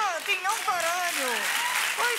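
Studio audience applauding over talking, with the applause swelling about a second in.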